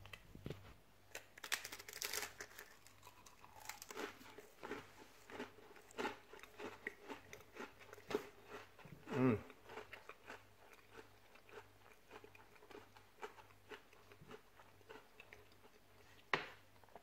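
A person chewing a crisp buttered black pepper cracker: faint, irregular crunches and mouth clicks, with one louder sound about nine seconds in.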